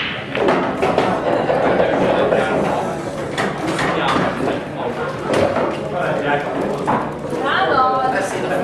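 Indistinct talking from people in a large hall, with the room's echo.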